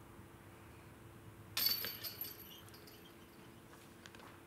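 Disc golf basket chains jingling in a short metallic rattle about one and a half seconds in, followed by a couple of fainter clinks.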